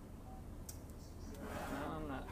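Low room hum with a faint click, then, from a little past halfway, a man's voice from the projected video playing through the classroom speakers.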